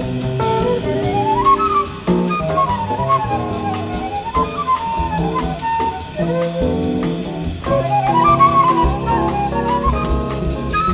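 Jazz quartet recording: a flute plays fast rising and falling runs over piano, upright bass and a drum kit's steady cymbal beat.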